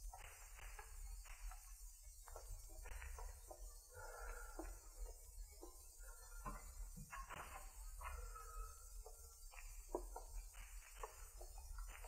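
Faint radio-drama sound effects of slow, creeping footsteps and creaking wooden boards, with a sharper click about ten seconds in.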